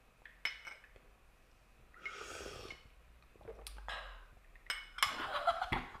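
Porcelain gaiwan lid clinking lightly against the cup, then one noisy slurp of tea drawn in with air about two seconds in. A breathy sound follows near the end.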